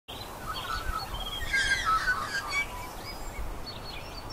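Several birds chirping and calling at once, many short overlapping chirps and whistled glides, busiest around the middle.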